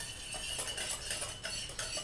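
A utensil stirring yeast, sugar and water in a glass bowl, ticking and clinking lightly against the glass in quick, irregular strokes.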